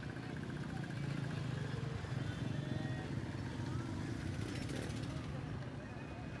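Busy open-air market ambience: a motorcycle engine running close by, under a murmur of crowd voices.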